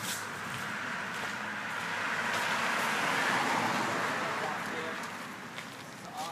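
A car passing on the street, its tyre and engine noise swelling to a peak about three seconds in and then fading.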